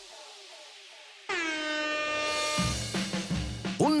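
A single loud horn blast starts suddenly about a second in, its pitch dipping briefly before it holds steady for about a second and a half. It sounds as the two players stand ready, consistent with a start signal for the duel. A music beat comes in under it near the middle, after the tail of earlier music has faded.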